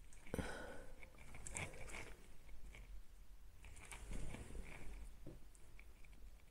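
Sheets of printer paper being handled and pressed together on a desk: faint rustling and crinkling in two spells, with a light knock about a third of a second in.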